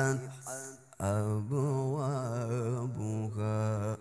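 Male qari's melodic Quran recitation (tilawah) amplified through a microphone and sound system. A short phrase fades out in the first half-second, then, about a second in, a long ornamented vowel is held for nearly three seconds with its pitch wavering up and down, and it stops near the end.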